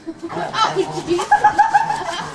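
A person laughing, rising to a quick run of short repeated 'ha-ha' pulses in the second half.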